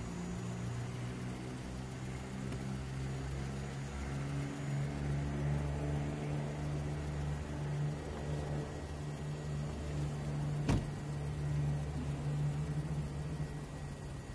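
Car engine running steadily at idle, with a car door shutting with a single sharp thud about three quarters of the way through.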